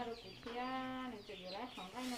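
A woman's voice with a drawn-out, steady-pitched vowel held for most of a second, over repeated short high chirps from birds.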